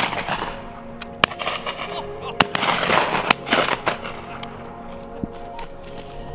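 Three shotgun shots about a second apart, each followed by a rolling echo, over background music.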